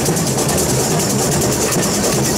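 Samba percussion band (bateria) playing a fast, even rhythm, with deep surdo drums underneath.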